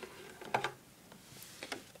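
Small plastic toy figurines being handled and set down on a plastic playset: a few light clicks and taps, about half a second in and again near the end.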